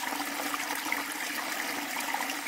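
Small stream of water pouring in a little cascade over rocks, a steady trickling and splashing.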